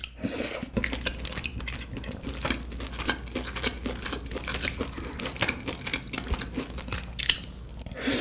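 Close-miked eating sounds: wet chewing and mouth smacking of saucy food, a dense run of small clicks and squelches, with one louder one about seven seconds in.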